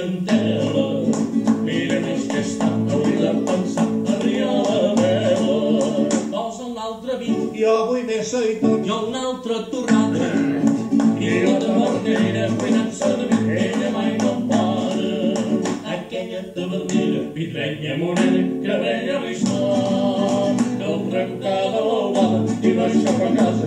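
Male singing accompanied by a rhythmically played acoustic guitar, a folk-style song performed live.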